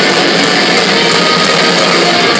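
Metal band playing live at full volume: a dense wall of distorted electric guitar with drums, heard from the crowd.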